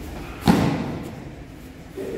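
A single sharp smack about half a second in, ringing out briefly in a large hall.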